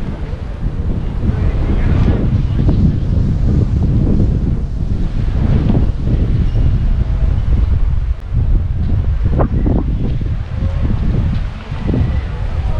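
Wind buffeting the camera's microphone: a loud, uneven low rumble that rises and falls throughout.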